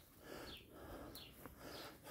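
Faint bird chirps, a few short high calls, over quiet outdoor background.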